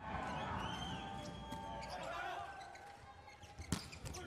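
A short musical transition stinger, its sustained tones fading over about three seconds. Near the end comes a single sharp smack, a volleyball being struck.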